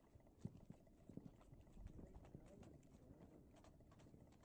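Very faint, soft hoofbeats of a mule walking through snow: a few irregular muffled thuds.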